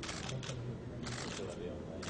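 Camera shutters firing in short rapid bursts, several times over two seconds, over a low murmur of voices.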